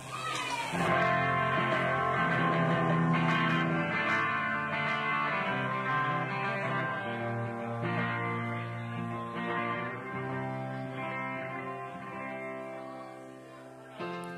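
Electric guitar music played through effects, with sustained ringing chords that swell in about a second in and fade toward the end.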